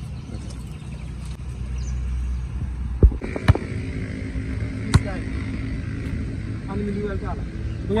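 A basketball bouncing on a concrete court: three sharp bounces, two close together about three seconds in and a third about a second and a half later.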